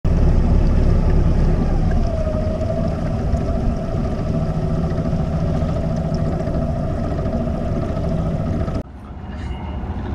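Water rushing and splashing along the side of a moving sailboat's hull, picked up close to the waterline, with a low rumble and a faint steady hum underneath. It cuts off suddenly near the end.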